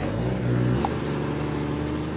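Jeep engine running under throttle as it pulls away, its note stepping up in pitch just under a second in.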